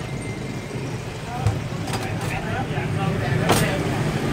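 Street ambience: road traffic running steadily with people's voices in the background, and one sharp click about three and a half seconds in.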